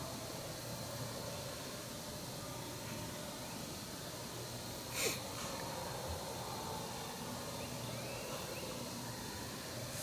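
Quiet outdoor ambience at dusk: a faint, steady hiss, broken once about five seconds in by a brief, sharp noise.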